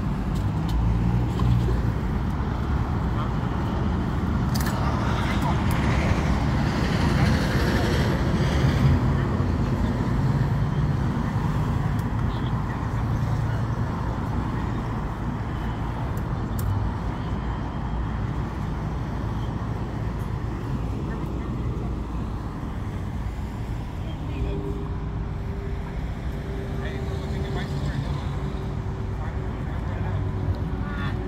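Street traffic on a busy city boulevard: a continuous rumble of passing cars with louder swells, and indistinct voices. A steady hum from an engine joins in near the end.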